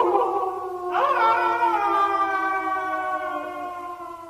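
A sustained, layered pitched tone with a brief wavering glide about a second in, slowly fading toward the end: the sound effect of an animated logo sting.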